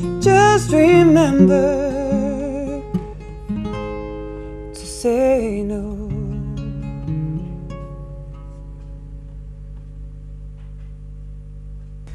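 A woman singing to her own acoustic guitar, closing a song: a couple of last sung phrases over plucked guitar notes in the first half, then the final guitar notes left ringing and slowly fading away.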